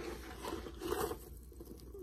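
Soft rustling and handling noises, a few brief scuffs about half a second apart, as a small metal bag chain is pulled out from inside a sneaker.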